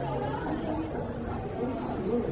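Indistinct chatter of several people talking at once, no single voice clear.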